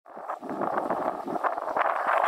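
Rough, fluctuating rustle on a handheld camera's microphone from wind and from the hand holding the camera.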